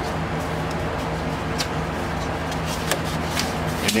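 Steady hum of electric room fans running, with a few faint paper rustles and light taps as a vinyl record in its paper inner sleeve is handled.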